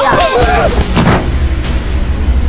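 A few loud, sharp booms, about three in quick succession, with a low rumble under them, from a film trailer's soundtrack. A voice is heard briefly at the start.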